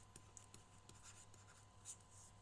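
Near silence with faint scratching and light ticks of a stylus writing on a tablet, with a slightly louder tick near the end.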